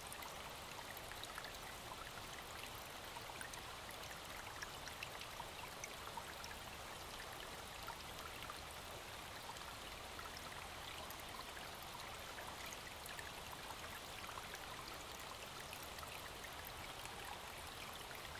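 Faint, steady rush of a small snowmelt stream running through the forest, with a few tiny ticks scattered through it.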